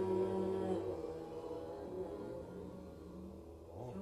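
Korean Buddhist chanting played back from a video: the voices hold a final note that ends about a second in, then die away, leaving a fading tail.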